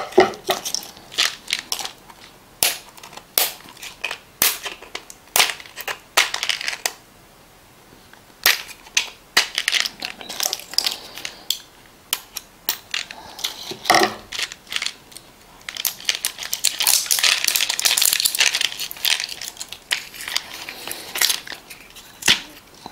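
A knife cutting and scraping the plastic shrink seal around a plastic vitamin bottle's cap: a run of sharp clicks and cracks with a short pause in the middle. From about two-thirds of the way in comes a denser stretch of plastic crinkling as the wrapping is pulled off and the bottle is handled.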